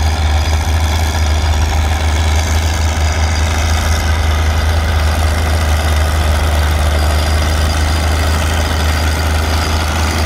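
Caterpillar D6 crawler tractor's engine running steadily under load as it pulls a plow, a loud, deep, even drone.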